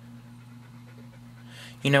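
Steady low electrical hum with no voice over it; near the end a man draws a breath and starts to speak.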